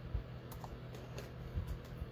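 A few soft taps and knocks from hands handling small paper die-cuts and a sheet of adhesive foam dimensionals on a craft mat, over a steady low hum. The firmest knocks come just after the start and about one and a half seconds in.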